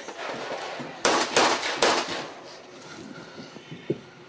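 Rifle gunfire: three loud shots in quick succession about a second in, each trailing off in an echo, then a single fainter crack near the end.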